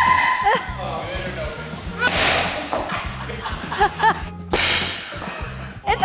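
A thrown rubber plunger smacking against a door, two sharp hits about two seconds in and about five seconds in, over background music with a steady beat. Short calls and a shout from the people watching come in between.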